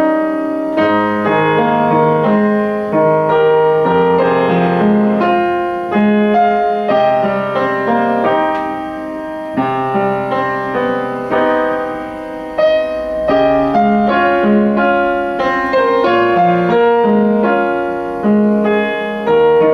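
Yamaha UX upright piano being played: a calm piece of held chords under a flowing melody, with low bass notes and gentle swells and dips in loudness.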